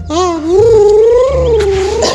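A single long, drawn-out wailing cry that glides up at the start and then wavers up and down in pitch for about a second and a half. It sounds like a cat-like yowl.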